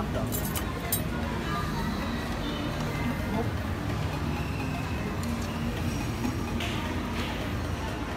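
Food court background: background music and a murmur of voices, with a few light clinks of tableware near the start.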